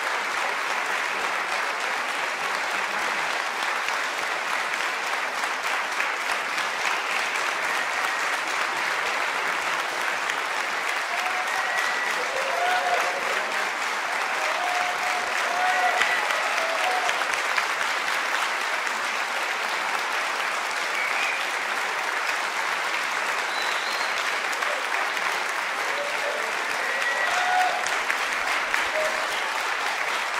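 Audience applauding steadily in a concert hall, with a few brief voices calling out over the clapping about halfway through and again near the end.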